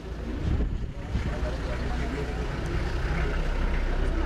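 Several people talking at once, with a steady low rumble underneath.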